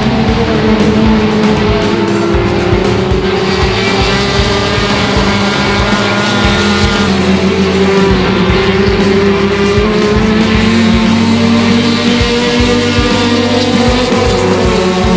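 Touring race cars' engines running hard as two cars race close together, with background music underneath.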